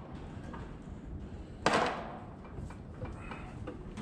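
Plastic seed-meter parts on a planter row unit being handled, with one sharp clunk a little under two seconds in and faint rattling and rubbing around it.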